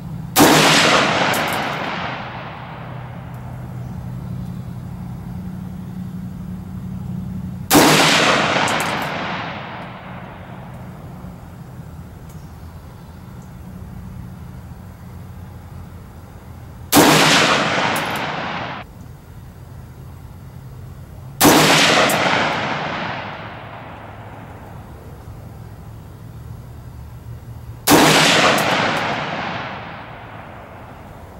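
AR-15 rifle fired five single aimed shots, spaced several seconds apart. Each sharp crack is followed by an echo that dies away over about two seconds.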